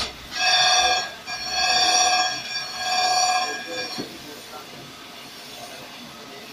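Grinding wheel of a crankshaft grinder squealing against a crankshaft journal: three long, high-pitched screeches over about four seconds, then a quieter steady machine running.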